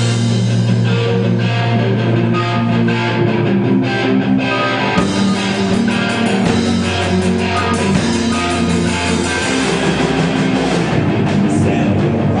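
Live rock band playing: electric guitars, bass guitar and drum kit, loud and steady, with the bass line shifting pitch a few times.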